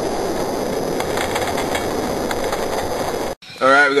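Die-cast Hot Wheels cars rolling down a plastic race track: a steady rolling rumble with faint clicks, which cuts off suddenly about three seconds in.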